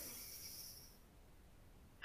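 A woman's slow, deep breath in, heard as a soft hiss that fades out about a second in.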